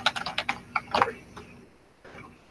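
Computer keyboard typing: a quick run of keystrokes that stops about a second in.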